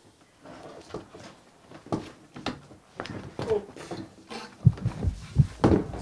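Scattered clicks and knocks from an elliptical cross-trainer's frame and pedals being handled as a person is helped onto it, with a run of heavier low thumps about five seconds in.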